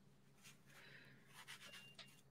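Near silence: a few faint, soft scratches of a paintbrush stroking watercolor paper as a small heart is painted, over a faint low steady hum.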